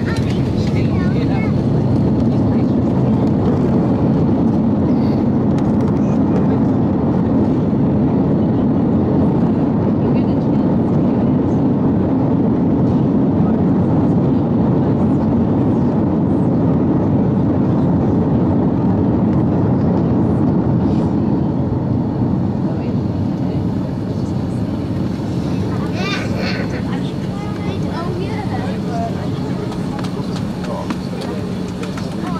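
Inside the cabin of an airliner on its landing roll: a loud, steady rumble of engines and wheels on the runway that eases off over the last several seconds as the aircraft slows.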